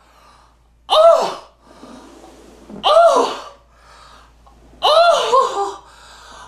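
A man's exaggerated, anguished vocal cries. Three loud wails, each rising then falling in pitch, come about two seconds apart, with audible breaths drawn in between.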